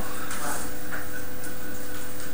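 Steady background hiss with a faint steady hum, and faint sniffs as a glass of beer is smelled.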